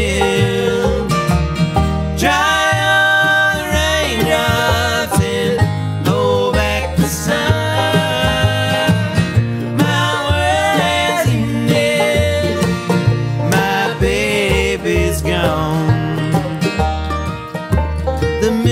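Bluegrass band playing live: mandolin, acoustic guitar, banjo and upright bass, with two voices singing in close harmony over a steady walking bass.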